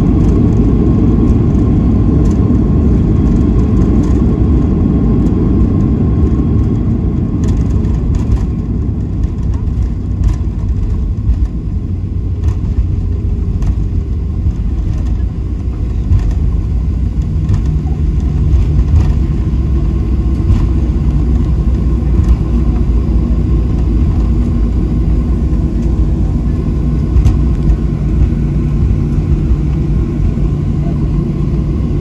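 Boeing 737-800 rolling on the ground after landing, heard inside the cabin: a loud, steady low rumble from its CFM56 engines and wheels. The higher rush fades over the first ten seconds or so as the aircraft slows, leaving a steadier low hum with a few light knocks.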